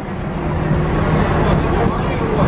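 City street noise: a steady low traffic rumble with an engine hum, under a murmur of passing voices.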